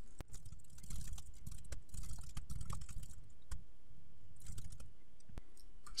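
Typing on a computer keyboard: an irregular run of key clicks as several lines of code are entered.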